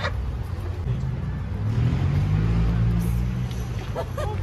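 A motor vehicle engine passing, its pitch rising and then falling away, over a steady low rumble of traffic.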